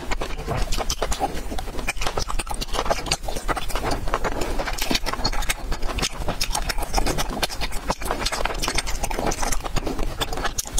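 Close-miked chewing of soft jelly candy: a dense, irregular run of sticky, wet mouth clicks and squelches, with no break.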